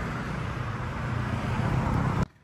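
Road traffic on a street: cars and a motorcycle going by, a steady rumble that grows gradually louder toward the end.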